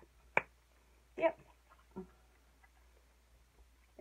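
A single sharp click from a plastic pop-up sink stopper as it is pushed open by hand.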